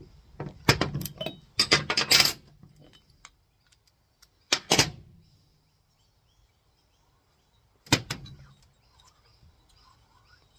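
Metal tools and engine parts being handled: a quick run of clattering knocks in the first two and a half seconds, another short knock just before halfway, and one sharp knock near the end.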